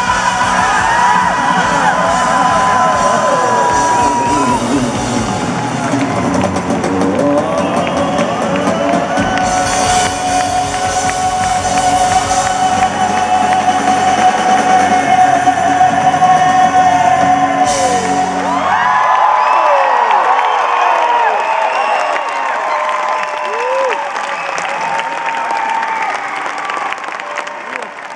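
A live band plays the closing bars of a song with a long held note; the band stops about 19 seconds in. Then the concert audience cheers, whoops and claps, dying down near the end.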